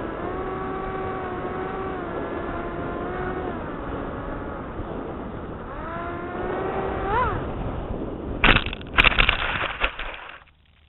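Small RC plane's motor and propeller humming steadily through the onboard FPV camera's microphone, its pitch dipping and rising with the throttle and sweeping up quickly about seven seconds in. Near the end the plane comes down into tall grass with several loud thumps and scrapes, and the motor sound stops.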